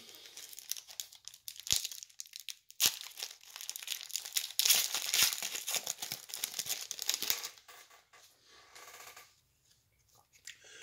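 Foil wrapper of a trading-card pack crinkling and tearing as it is opened, with two sharp clicks about two and three seconds in. The crinkling stops about seven and a half seconds in.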